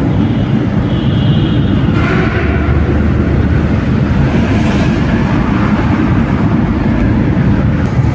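Car's road and engine noise heard while driving through a rock tunnel: a loud, steady low rumble. A passing vehicle adds to it in the middle.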